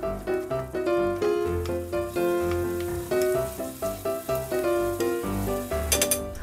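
Background music: a melody of held notes over a bass line. Underneath it, faint sizzling of sliced vegetables and mushrooms frying in the pan.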